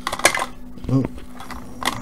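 Brief clatter of small hard objects being set down on a cluttered workbench, a quick run of sharp clicks, with a single click near the end.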